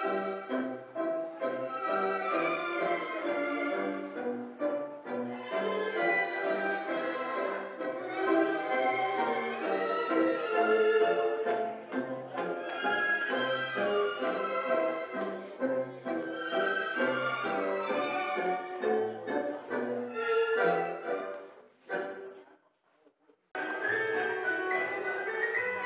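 Recorded tango music, an orchestral tango with violins, playing for dancing. It ends about 22 seconds in, and after about a second of near silence different music begins.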